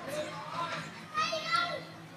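Young long-tailed macaques squealing: short high-pitched calls that waver in pitch, the loudest coming about a second in.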